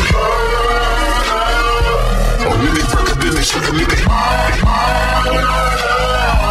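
Slowed and chopped hip-hop track in a stretch with no rapping: a deep bass note comes in right at the start and holds under wavering, pitched-down melodic tones.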